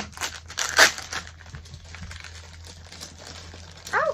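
Plastic blind-bag packets being torn open and crinkled by hand, with two sharp rips in the first second, then softer crinkling.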